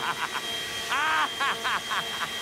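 A person laughing in short rapid bursts, with a longer laugh falling in pitch about a second in.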